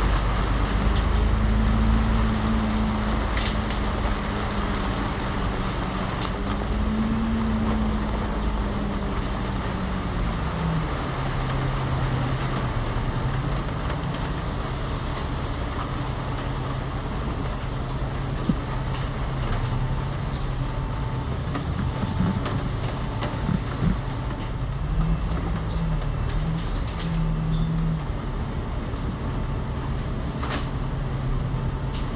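Cummins L9 Euro 6 diesel engine of an ADL Enviro500 MMC double-decker bus, heard from on board. Its note rises and falls for the first ten seconds or so while under way, then drops and holds lower and steadier as the bus slows in traffic toward a stop.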